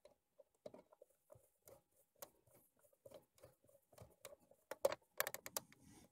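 A small screwdriver turning a screw into the plastic casing of a Canon BJC-70 printer: faint, irregular ticks and scrapes, with a quick run of louder clicks near the end.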